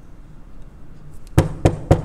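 Three quick, loud knocks on a hard surface, about a quarter second apart, in the second half. They act out knocking on a house door before a greeting.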